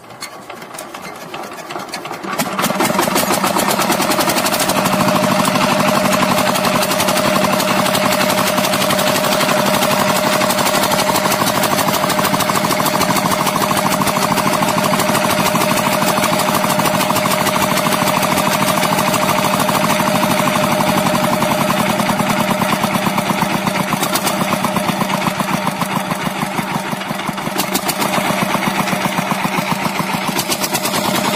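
Small single-cylinder diesel engine driving a tubewell pump, picking up speed over the first two to three seconds after starting, then running steadily with a fast, even knocking beat.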